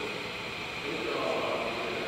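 Steady room tone of a large industrial hall: an even hiss with a faint steady high tone, and faint distant voices.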